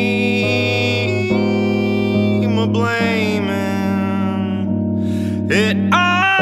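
Electric keyboard playing held chords with a man singing over it, his voice gliding between notes.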